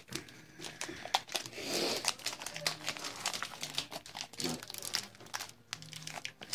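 Foil booster pack wrappers crinkling and trading cards being handled, a run of small crackles with a louder rustle about two seconds in.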